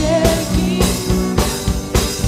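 Live worship band music: a drum kit keeps a steady beat under bass, guitar and singing voices.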